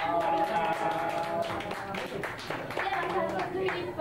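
A small audience clapping at the end of a song, with voices over the applause.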